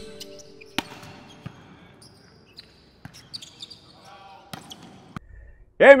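Volleyball being hit during team practice in a large gym: a handful of scattered sharp slaps of the ball, with faint players' voices and a few short high squeaks of shoes on the court.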